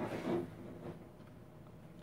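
Paper and chipboard album pages being handled and turned on their metal rings: a brief rustle in the first half-second, then only faint handling.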